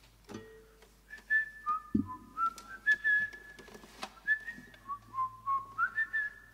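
A person whistling a short tune that steps up and down in pitch, starting about a second in. Scattered small clicks and a low knock about two seconds in sound beneath it.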